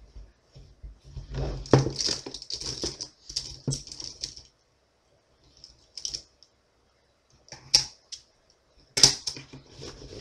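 Bundles of plastic Bic ballpoint pens clattering and rattling as they are lifted out of and shuffled around in a carry case. The clicking comes in a long burst in the first half, then in a few short bursts.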